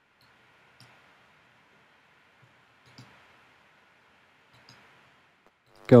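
About five faint, scattered clicks from working a computer's mouse and keyboard, over a low hiss.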